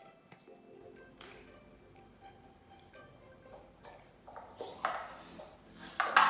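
Quiet background music with a few light taps of paper cups being set down on a tiled floor, and a couple of short rustling bursts near the end.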